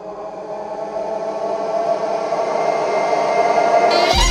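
Horror-film sound-design riser: a dense drone of many steady tones that swells steadily louder throughout, broken off by a sudden loud hit at the very end.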